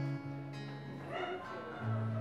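Steel-string acoustic guitar fingerpicked in a song's intro, low bass notes ringing under lighter higher notes. A brief wavering higher sound comes a little past halfway through.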